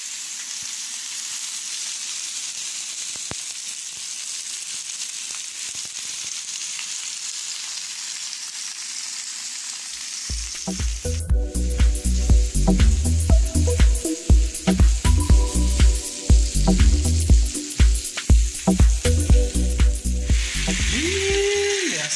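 Pork ribs, potatoes, onion and tomato sizzling steadily in a skillet over a gas flame. About halfway in, loud irregular low thumping joins the sizzle for several seconds.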